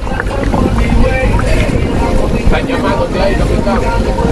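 Steady wind rush on the microphone and the running noise of a moving catamaran, with voices over it.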